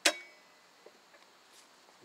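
A single sharp click with a brief ring as the flip-down leg on a hard plastic radio carrier case snaps open, followed by a faint tick about a second later.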